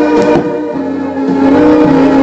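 Music playing from the cassette deck of a Lasonic TRC-931 boombox, with one sharp click of a deck key being pressed near the start. The music dips for about a second and then comes back fuller.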